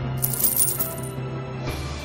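Metal coins jingling and clattering as they are tipped onto a counter, lasting about a second, over background music.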